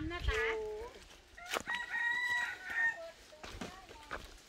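A rooster crowing once, a single drawn-out call of a little over a second, starting about one and a half seconds in.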